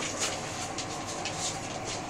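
Scuffling with irregular light clicks: a dog moving about on a tiled floor with a ball, mixed with handling noise from the phone.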